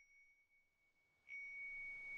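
A high, bell-like chime tone rings faintly, then is struck again more loudly just over a second in and keeps ringing on one pitch.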